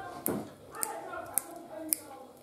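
Tender wild asparagus spears being snapped by hand, four crisp snaps about half a second apart, clear and loud. They snap cleanly because they are early, very tender spears.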